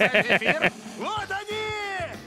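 A man laughing in quick 'heh-heh-heh' bursts, about six a second, which stop under a second in. Then voices call out with pitch sliding up and down.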